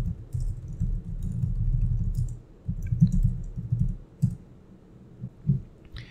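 Computer keyboard typing: quick runs of dull keystrokes, dense for the first couple of seconds, then a short pause and another run. After that come a few single strokes spaced apart near the end.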